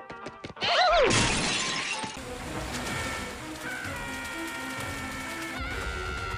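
A shattering crash about a second in, followed by music with held notes.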